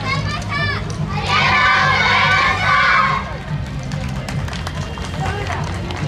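A group of children shouting together for about two seconds, starting about a second in, over street crowd chatter and a steady low hum.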